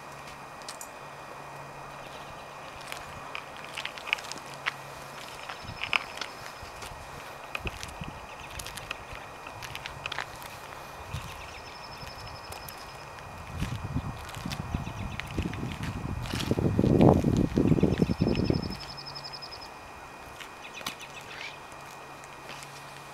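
Footsteps on pavement among scattered clicks, with a few short high trills now and then. A louder low rumble rises in the second half and lasts about five seconds before cutting off.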